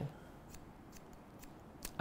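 Barber's scissors snipping hair: a handful of faint, quick snips.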